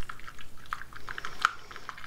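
A paintbrush stirring paint-tinted dish-soap water in a small plastic cup to work up bubbles: soft, irregular liquid swishing with small scattered clicks.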